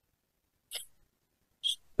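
A pause in which the sound is cut to silence, broken by two brief faint mouth or breath sounds from the speaker: a short one about three-quarters of a second in, and a higher, hissier one just before he speaks again.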